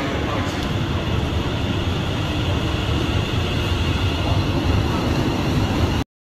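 London Underground train running along the platform: a loud, steady rumble with a faint high whine above it.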